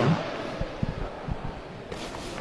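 Quiet boxing-ring ambience with a few short, dull low thumps: the boxers' feet on the ring canvas as they close in.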